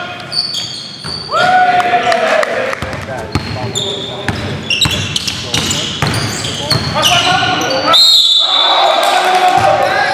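A basketball being dribbled on a hardwood gym floor, a series of sharp bounces, mixed with short high squeaks of sneakers on the floor and players' shouts in a large echoing gym.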